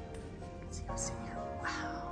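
Background music with sustained held notes, with a few short harsh call-like sounds over it, one with a falling sweep near the end.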